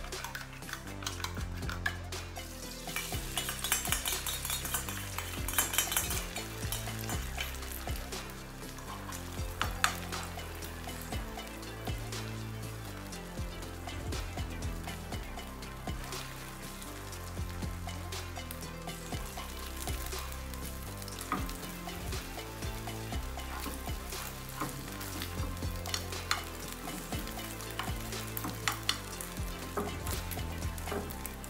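Beaten egg frying in oil in a frying pan, sizzling loudest a few seconds in as it spreads over the hot pan. A metal spoon stirs and scrapes it, with clicks against the pan, over background music.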